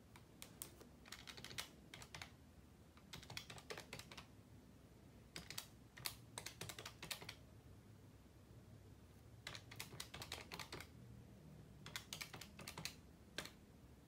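Pen writing on a stack of paper: faint scratchy strokes and taps of the tip, coming in short bursts of quick strokes with pauses between them.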